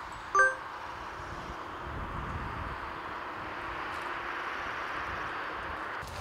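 A single short, bright ding about half a second in, over a steady outdoor hiss.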